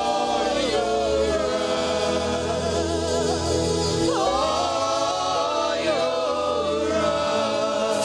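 Live gospel worship singing: a praise team of several voices on microphones sings held, sliding notes over instrumental backing with a steady bass.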